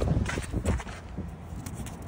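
A few irregular footsteps in snow in the first second, then quieter, over a steady low rumble.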